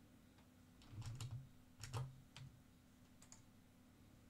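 A handful of faint computer keyboard keystrokes and clicks, spread between about one and three and a half seconds in, over near silence with a faint steady hum.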